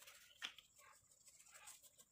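Near silence: faint room hiss, broken by one short, sharp click about half a second in.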